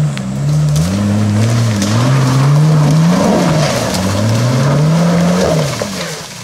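Jeep Wrangler TJ's engine revving up and down several times under load as it climbs a steep, slippery dirt track, with tyres scrabbling on loose dirt and leaves. It fades near the end as the Jeep pulls away up the slope.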